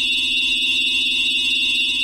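Electronic synthesizer music: a high, warbling chord held steady over a low sustained note, after a run of plucked notes stops just before.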